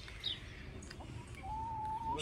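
Faint outdoor ambience with small birds chirping: a few short, high, falling chirps, and a thin whistled note held for about half a second near the end.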